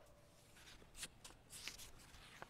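Faint rustling of paper as loose sheets of sermon notes tucked in a book are handled, in two short rustles, about one second in and again just past halfway.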